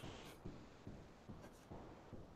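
Faint scratching of a pencil sketching on paper, in short strokes a couple of times a second.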